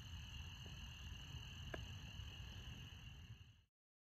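Distant frog chorus: a steady, faint high-pitched trilling over a low outdoor rumble, cut off suddenly near the end.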